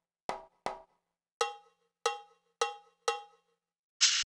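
Percussion one-shot samples from a trap/drill drum kit previewed one after another. First come two short, sharp hits of one sample. Then a different, pitched and briefly ringing percussion hit sounds four times, about half a second apart.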